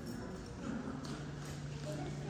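Footsteps on a hard tiled floor in a large hall, with faint voices behind and a steady low hum that comes in about halfway through.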